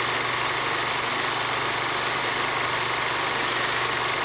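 A steady, loud, noisy drone with a low hum underneath, unchanging in level and pitch, that starts suddenly just before and runs on without a break.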